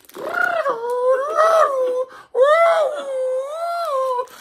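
A high-pitched human voice making two long, wavering wordless calls, each about two seconds, with a short break between them.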